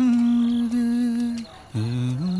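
A man humming a slow tune. One long held note lasts about a second and a half, then after a short break the tune moves on through a few notes that step down and back up.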